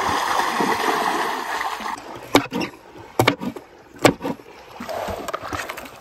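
Water splashing and churning as a person lunges through shallow sea water, for about two seconds. After that it goes quieter, with a few sharp knocks.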